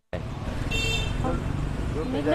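Steady low rumble of street traffic, with a brief high-pitched sound about three-quarters of a second in. The audio cuts out completely for an instant at the very start, a microphone dropout.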